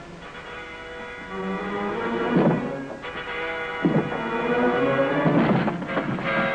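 Tense orchestral score holding sustained chords, broken by heavy thuds about a second and a half apart from about two seconds in: bodies slamming against a door to break it down.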